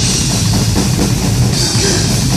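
Drum kit played hard in a live heavy metal song, with bass drum and cymbals to the fore, heard up close from beside the kit on stage.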